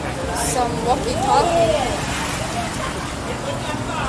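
City street ambience: a steady rumble of road traffic, with people's voices talking nearby during the first two seconds.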